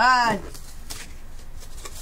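A short, loud shout of 'Ah!' in the first half-second, its pitch rising then falling. After it there is quiet room noise with a few faint clicks.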